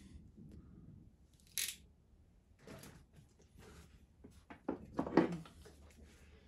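Quiet hand handling of wiring and a ratchet crimping tool: a few short, soft rustles and scrapes, with a brief hissy one about a second and a half in and a small cluster near the end.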